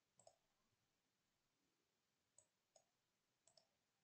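Near silence with a few faint computer mouse clicks, one about a quarter second in and several more in the second half.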